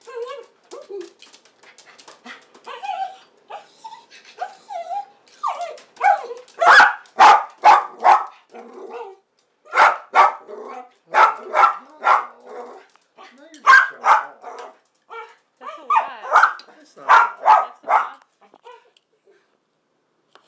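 A small dog begging for food, first making soft wavering whines, then from about six seconds in barking loudly in quick runs of several barks, with short pauses between runs.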